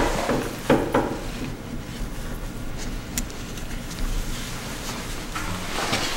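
A few light knocks and clatter, then low rumbling handling noise from a camera held in one hand.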